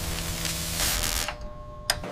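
Electrical machinery humming steadily under a hiss of flying sparks; the hiss drops away about a second and a half in, leaving the fainter hum, and a single sharp click comes just before the end.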